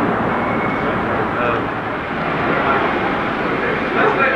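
Steady outdoor background noise with indistinct chatter from a group of people.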